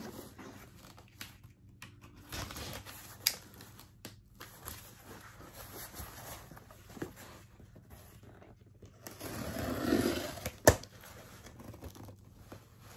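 Packing tape being pulled off a cardboard shipping box, with scattered rustles and scrapes of cardboard. A louder tearing stretch comes about ten seconds in and ends in a sharp snap.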